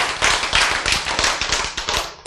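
Clapping from a group of people: many quick, irregular claps that thin out and fade near the end.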